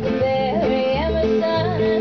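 Folk band playing live: guitars strumming under a lead melody that slides and bends between notes over a steady held tone.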